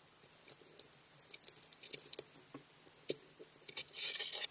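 Clear plastic carrier film being peeled off heat-pressed transfer vinyl on a sweater: faint, irregular small crackles and ticks as the film lifts away, with light handling of the fabric.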